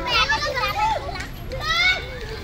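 Young children's voices shouting and calling out in play, with a loud high-pitched squeal rising near the end.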